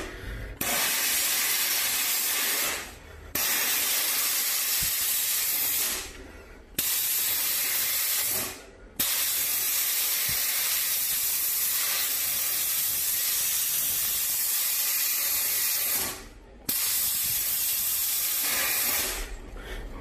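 Jewellery steam cleaner at full pressure, its nozzle blasting hissing steam onto a ring in five blasts with short pauses between them, the longest lasting about seven seconds from about nine seconds in. The jet is steam-cleaning and disinfecting the ring.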